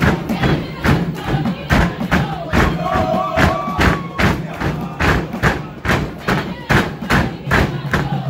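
Traditional Lugbara dance drumming: steady, even drum beats about two to three a second. A brief pitched voice call rises over it about three seconds in.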